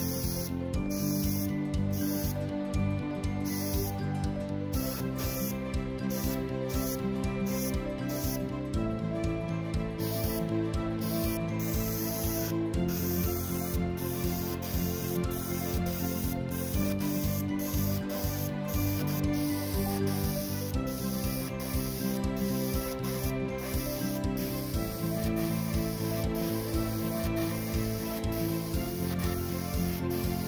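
Iwata HP-M2 single-action airbrush hissing as it sprays paint, in short bursts with brief breaks, running more steadily in the second half, under background music.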